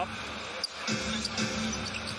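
Basketball dribbling on a hardwood court over arena crowd noise, with in-arena music holding a steady low note.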